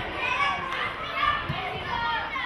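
Children's voices shouting and calling to each other during a football game, several at once.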